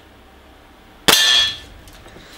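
Gamo Bone Collector IGT gas-piston break-barrel air rifle firing a single shot about a second in: a sharp crack with a short metallic ring that dies away within half a second.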